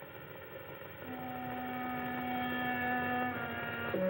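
Soft background film score of long held notes, growing louder about a second in and moving to a new note near the end.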